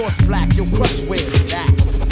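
Hip hop track playing: rapped vocals over a beat with a deep bass line.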